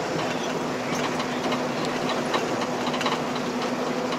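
Steady road noise inside a moving car's cabin: tyres running on the pavement with a steady low hum and faint irregular ticks.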